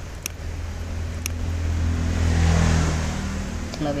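A motor vehicle's engine passing by, swelling to its loudest about two and a half seconds in and then fading, over a steady low hum. Two sharp mouse clicks come in the first second and a half.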